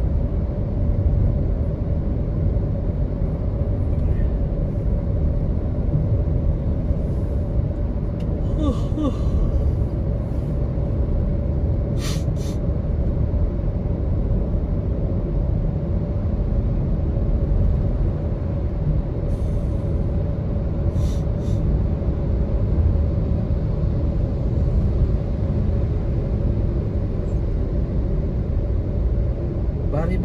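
Steady rumble of a road vehicle driving through a road tunnel: tyre and engine noise with a constant hum, and a few brief faint clicks.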